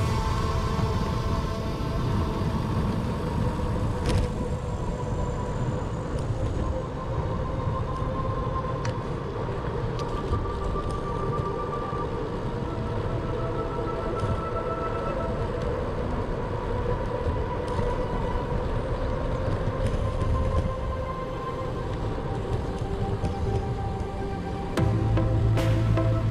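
Wind rushing over the microphone and tyre rumble from a road bicycle riding a paved cycle path at about 30 km/h, with a few light clicks.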